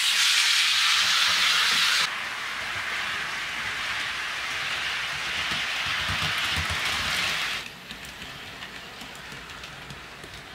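HO scale 89-foot flatcar rolling freely along the track, its wheels on the rails giving a steady rolling hiss. The hiss drops in level about two seconds in and stops shortly before the end.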